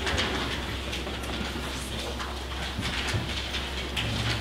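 Steady low electrical hum over room noise, with faint scattered clicks and rustles from the pages of a hand-held Bible.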